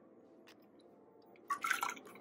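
Cashew milk poured from a plastic quarter-cup measure into an empty plastic blender jar: a short splash and patter of liquid about one and a half seconds in, after a faint click.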